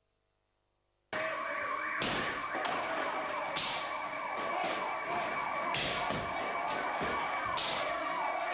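Emergency vehicle sirens sounding in quick repeated pitch sweeps, starting about a second in after a moment of silence. Loud bursts of noise break in every second or two.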